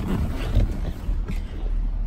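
2016 GMC Sierra 2500 HD's engine idling, heard from inside the cab as a steady low hum. There is a bump about half a second in from the camera being moved against the seat.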